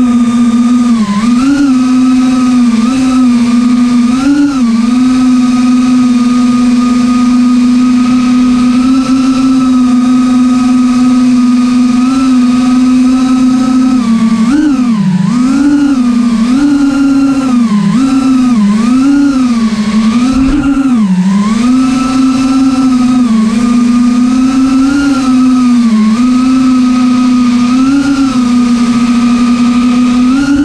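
Cinewhoop FPV drone's brushless motors and ducted propellers whining in flight, heard from the camera on the drone: one steady pitched hum that dips and swells in pitch as the throttle changes, with a run of quick dips and rises about halfway through.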